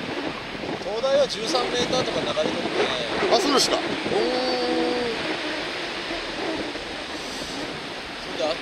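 Steady rush of wind and breaking surf on an open, windy shoreline, with wind noise on the microphone.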